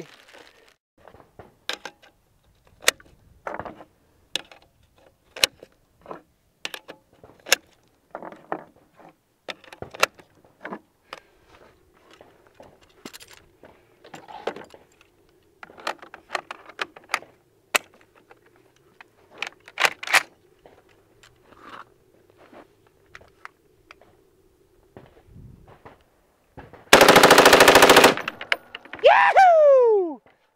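Scattered metallic clicks and clacks as an M14 rifle is handled and loaded. Then, about 27 seconds in, the rifle fires one loud full-automatic burst of about a second in .308 calibre.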